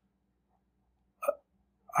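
A pause in a man's talk, nearly silent apart from one short vocal sound from him about a second and a quarter in.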